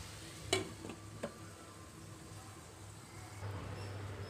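Tomatoes and curry leaves sizzling faintly in oil in an aluminium kadai, with two sharp clinks about half a second and a second in as a glass lid is set onto the pan.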